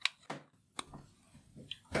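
A few sharp, light clicks of small machined steel parts handled and fitted together by hand. The dovetail clamp piece of a dial indicator holder is going onto its threaded screw: two clear clicks, then a fainter one.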